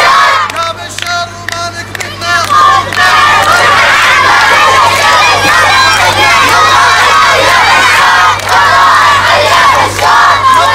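A large crowd of children shouting a chant together, led by adult voices. It is quieter for about the first three seconds, then loud and sustained.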